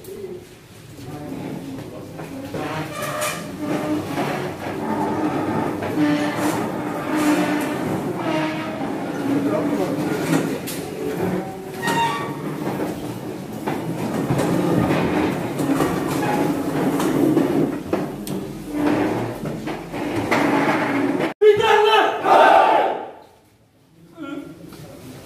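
Overlapping chatter of a group of men talking at once, a steady babble of many voices that cuts off abruptly near the end.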